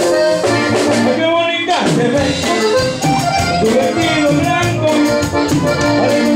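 Live norteño band playing an instrumental passage: button accordion carrying the melody over bajo sexto strumming and congas, with a quick falling run about two seconds in.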